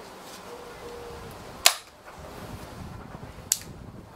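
Weihrauch HW40 PCA air pistol being charged and shot: two sharp cracks, the louder about one and a half seconds in and a shorter one near the end.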